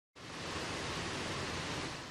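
Steady, even machinery noise of a textile factory hall with rows of weaving machines, starting abruptly a moment in.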